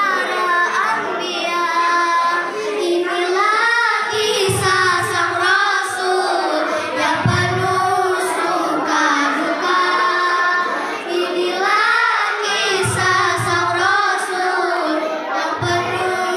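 Two young girls singing an Indonesian devotional song about the Prophet Muhammad into microphones: a wavering melody with some long held notes.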